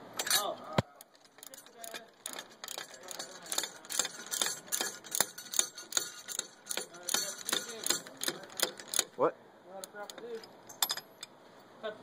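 Ratchet wrench clicking in short irregular runs as a socket turns the nut off the bottom of a ball joint stud, with light metallic clinks.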